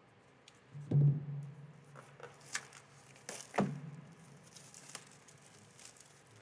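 Plastic shrink wrap crinkling and tearing as it is cut and peeled off a cardboard booster box, with scattered short crackles. The box is knocked twice while being handled, about a second in and again a little past midway.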